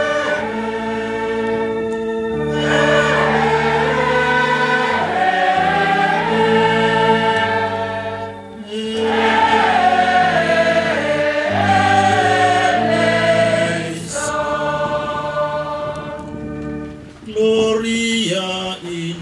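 A mixed choir of men and women singing a Latin Mass setting in long, sustained phrases with a low bass line. The singing breaks briefly about halfway through and again around two-thirds of the way, then fades out shortly before the end.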